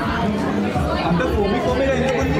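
Casual conversation: people talking and chattering at close range.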